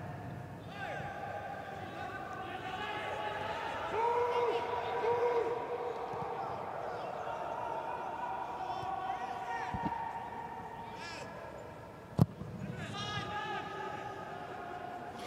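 Football players' voices calling and shouting across the pitch of an empty stadium, with a single sharp ball kick about twelve seconds in.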